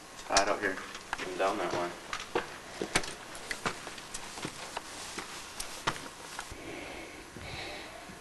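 Footsteps on rocky ground: irregular sharp clicks and scuffs over several seconds, with a short spoken word about a second and a half in.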